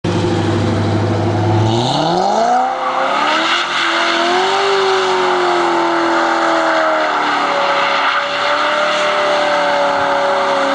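Modified Corvette C6 V8 with long-tube headers and an aftermarket exhaust, running low at first, then revving up about two seconds in and held at high revs while the rear tyres spin through donuts. The spinning tyres add a steady hiss under the engine.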